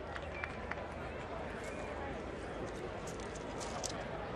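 Ballpark crowd ambience: a steady murmur of spectators talking in the stands, with a few short sharp clicks near the end.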